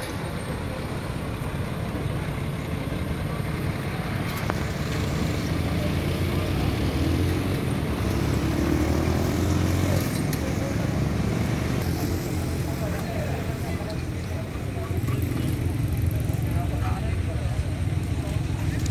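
Engine of a heavy military cargo truck running as it drives slowly past, swelling to its loudest about halfway through and then easing off, with indistinct voices of people around it.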